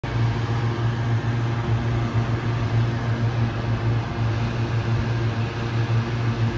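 A steady low mechanical hum at a constant pitch over a layer of noise, running evenly without change.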